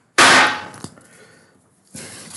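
A single sharp knock of a hard object on a desk, ringing briefly as it fades, followed by a faint click.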